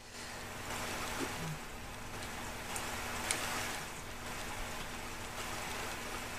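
Steady hiss with a faint low hum: background room and recording noise, with one faint click about three seconds in.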